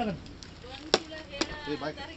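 Two sharp knocks about half a second apart, the first louder: a long stick striking a hard surface.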